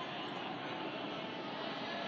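Steady, even background noise of a large, echoing hall, a constant hiss and hum with no distinct events.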